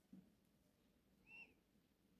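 Near silence: room tone, with one faint, short high-pitched chirp a little past the middle.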